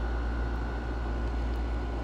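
Steady low hum and even hiss of room background noise, with a faint steady high tone and no distinct events.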